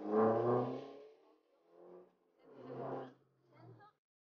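A man's voice calling rally pace notes over the in-car intercom, in four short bursts of words, with the audio cutting to silence between them.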